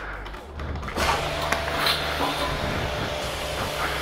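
Coin-operated self-service pressure washer starting up about a second in, its pump and spray running with a steady hiss.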